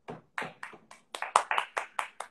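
Hands clapping: a quick, uneven run of sharp claps, about five or six a second.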